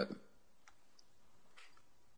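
A quiet pause in a voice recording: faint room tone with a few soft, separate clicks about a second apart.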